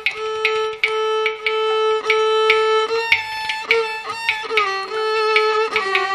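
Carnatic violin playing held notes that bend and slide between pitches, over a running pattern of mridangam and ghatam strokes.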